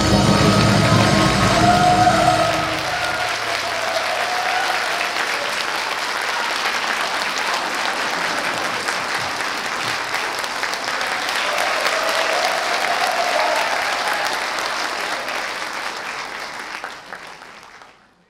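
A traditional Korean orchestra's final chord rings out and dies away over the first few seconds, under an audience's steady applause. The applause fades out near the end.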